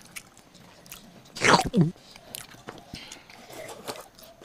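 Noodles being slurped and chewed, with two loud slurps about a second and a half in and soft chewing around them.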